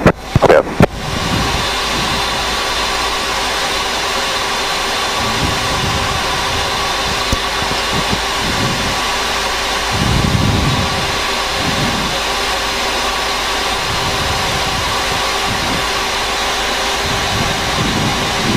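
Boeing 737-800 flight-deck background noise in flight: a steady rush of airflow and air-conditioning air with a faint steady hum.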